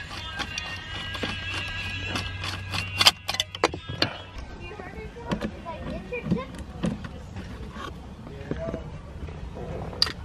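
Background music with sustained chords for about the first four seconds, then quieter. Scattered small metallic clicks come from a screwdriver and socket working the T30 Torx screws that hold a steering-wheel airbag.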